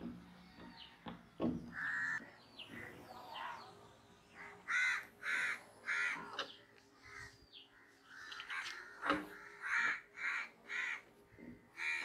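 Crows cawing in two runs of about three caws each, around five seconds in and again near ten seconds. A few sharp knocks of chalk on a blackboard fall in between.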